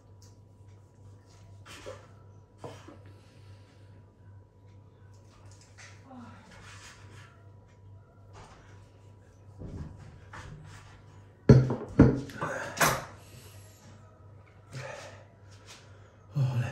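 A man's short wordless vocal sounds, with the loudest cluster about twelve seconds in, over a faint steady low hum.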